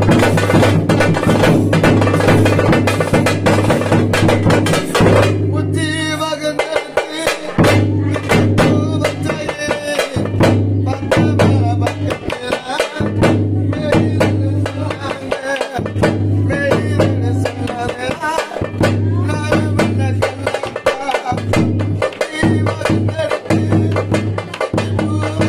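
Tamil folk song sung by a man over parai frame drums and a large bass drum beating a steady rhythm.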